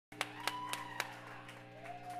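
Steady electric hum from a band's amplifiers, with four sharp, evenly spaced clicks about a quarter second apart in the first second, then a faint tone sliding up and back down near the end.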